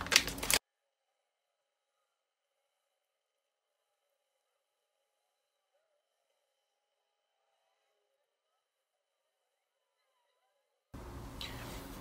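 Near silence: the sound cuts out about half a second in and stays dead silent, coming back as faint room noise about a second before the end.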